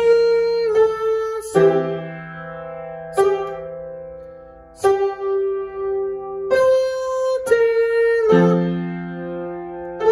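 Yamaha upright piano played with both hands: a slow passage of about eight struck notes and chords, one every second or so, each ringing on and fading before the next.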